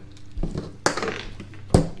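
Small fishing tackle being handled at a table while a split shot is worked onto a soft-plastic jerkbait hook: a soft thump, then two sharp clicks, the second and loudest near the end.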